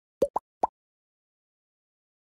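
Three quick cartoon 'bloop' pop sound effects from a title-card animation, each a short upward-sweeping pop, all within the first second.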